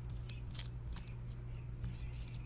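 Trading cards being handled and slid against one another, a few short swishes over a steady low hum.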